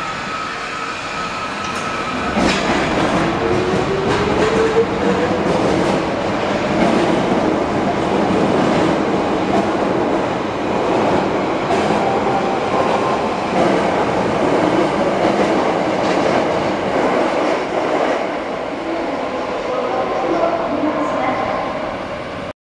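Osaka Municipal Subway 30 series aluminium-bodied train pulling out of the station. About two and a half seconds in it starts off with a whine rising in pitch, then the cars run past with steady wheel-and-rail noise to the end.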